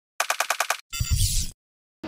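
Edited intro sound effect: a quick run of seven sharp, ringing clicks, about ten a second, then a short noisy burst with a deep low end lasting about half a second.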